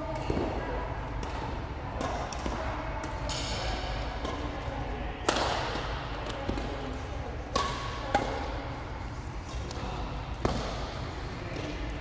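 Badminton doubles rally: sharp cracks of racket strings hitting the shuttlecock roughly every second, the loudest about five seconds in.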